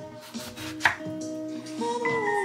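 Kitchen knife slicing through a lemon and striking a wooden cutting board: one sharp chop a little under a second in, with a fainter cut before it.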